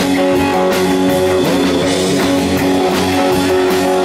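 Live rock band playing: electric guitar over bass and a drum kit keeping a steady beat, in an instrumental stretch with no singing.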